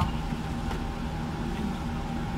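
Steady low rumble inside a car's cabin with the engine running.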